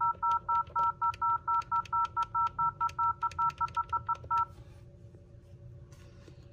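Touch-tone keypad of an office desk phone, the 0 key pressed over and over, about five quick beeps a second, each with a key click, stopping suddenly a little after four seconds. Repeated presses of zero in an automated phone menu to reach a live agent.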